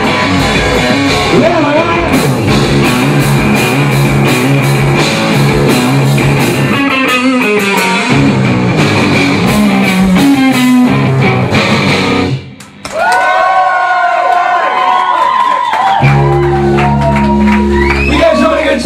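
Two-piece rock band playing loud: a distorted electric guitar through Marshall amps and a drum kit pounding out a steady beat. The music breaks off abruptly about twelve seconds in. Sustained wavering tones follow, and a low steady hum starts near the end.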